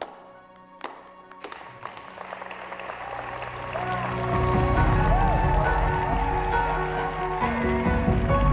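Music under a few single sharp claps, then a crowd's applause and cheering swelling up, loud from about four seconds in.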